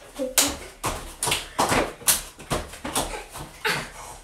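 Bare feet landing on a padded floor mat during star jumps: a run of uneven thumps, about two a second, from several people jumping.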